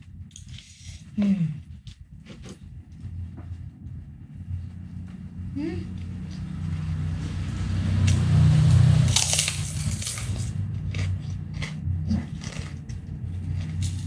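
Fried kerupuk cracker being bitten and chewed, with the loudest crunch just after nine seconds in, followed by a run of smaller crunches.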